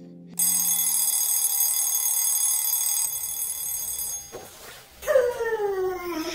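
Red twin-bell alarm clock ringing with a bright, steady bell clatter that starts suddenly and stops about four seconds in. A short sound falling in pitch follows near the end.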